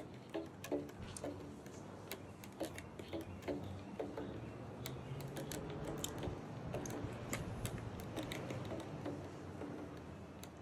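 Fender Jazz Bass on its old original strings, plucked quietly: a run of short, repeated low notes with sharp string and fret clicks.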